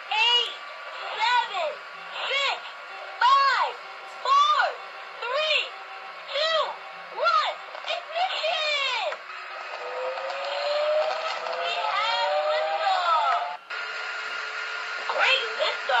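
A voice counting down from eight to one, about one number a second, ending in "blast off". Then a rising tone of about four seconds that cuts off suddenly.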